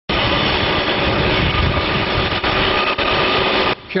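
Backhoe loader's diesel engine running under load as the machine pushes through deep snow, a loud steady noise that cuts off abruptly near the end.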